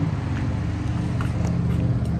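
A pickup's V6 engine idling: a steady low hum, the 2019 GMC Canyon's 3.6-litre V6 running at idle.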